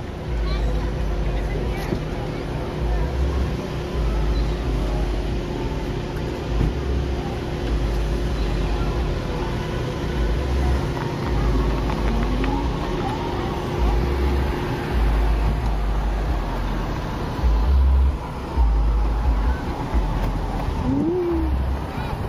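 Wind buffeting the microphone of a camera on a slowly moving ride, as a low rumble in uneven gusts, with a faint steady hum through the first two-thirds.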